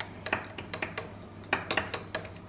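Metal spoon stirring coffee in a tall drinking glass, clinking irregularly against the glass several times.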